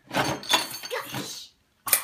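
Plastic and wooden toys clattering and knocking together as a child rummages through toy bins, with a few faint ringing clinks among them, for about a second and a half before stopping abruptly. One sharp knock near the end.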